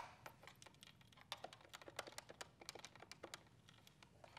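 Keys on a corded telephone handset's keypad pressed one after another while dialling a number: a quiet run of small, irregular clicks, after one sharper click right at the start.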